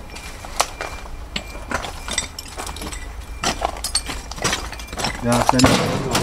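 Footsteps crunching and clinking over broken clay roof tiles and charred debris, about two or three steps a second. A man starts to speak near the end.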